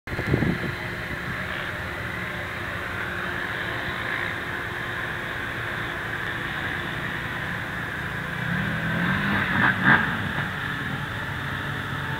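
Off-road vehicle engines running steadily, with one engine revving up and back down about nine to ten seconds in.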